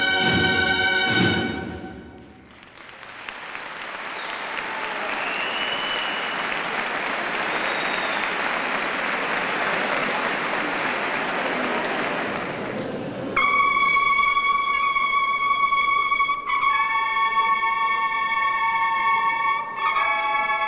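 A cornet and drum band's closing brass chord dies away, followed by about ten seconds of audience applause. Then the band's cornets start the next march with long, loud held notes, shifting to a new chord a few seconds later.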